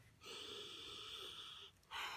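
A woman's long, faint drawn breath of about a second and a half, with no voice in it, followed by a shorter one near the end: a reaction to the sharp onion fumes stinging her nose.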